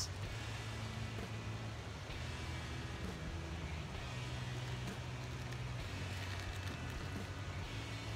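Steady low rumble of background noise with faint music underneath; no distinct snap or click stands out.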